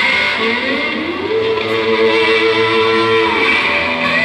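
Live rock band playing with amplified electric guitars: a sustained guitar line slides up in pitch about half a second in and holds there until the notes change near the end.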